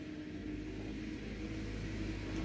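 A steady low hum with a faint held tone and no distinct events: room background noise.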